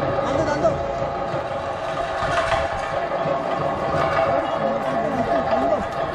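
Men's voices from a gathered crowd, calling and talking over one another, with a steady droning tone held underneath.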